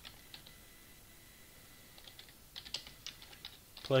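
Computer keyboard typing: a few isolated keystrokes, then a quick run of keystrokes from about two seconds in.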